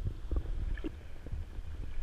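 Muffled low rumble of water moving around an underwater camera, with a few faint clicks scattered through it.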